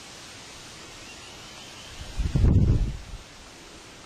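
Steady outdoor hiss, with a gust of wind buffeting the microphone about two seconds in: a low rumble lasting about a second that is much louder than the hiss.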